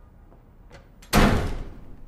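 A door slammed shut hard about a second in: one loud bang that dies away over about half a second, after a faint tap just before it. It marks an angry exit at the end of a shouted argument.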